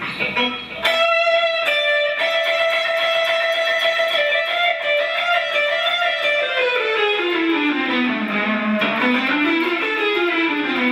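Electric guitar playing a lead run in the harmonic minor scale. A held note starts about a second in, then a string of quick notes follows. From about six and a half seconds a fast scale run steps down in pitch and turns back up near the end.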